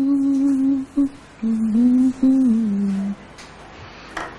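A man humming a short tune with his mouth closed, a few held notes with small steps in pitch. It breaks off briefly about a second in, then resumes and steps down to a lower note before stopping a little after three seconds in.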